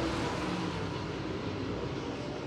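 A pack of dirt late model race cars' V8 engines running at racing speed, a steady drone.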